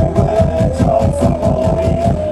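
Live folk-rock band playing: a fast, driving beat in the low end under one long held note that slowly rises in pitch.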